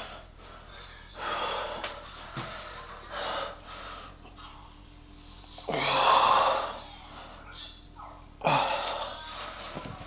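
A man's loud, forceful breaths and exhalations as he strains to flex his arms and chest: about four, the loudest about six seconds in.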